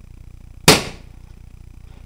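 A single loud, sharp bang about two-thirds of a second in, dying away within a third of a second.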